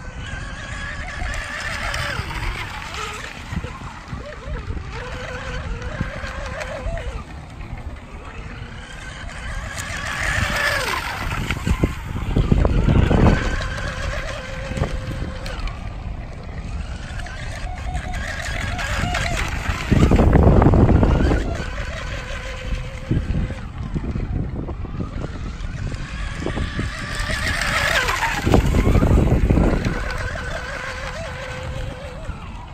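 RC speedboat's brushless electric motor and propeller running flat out, a high whine that rises and falls in pitch as the boat makes repeated passes, with spray hiss. Three louder low rushing bursts, near the middle, about two thirds in and near the end.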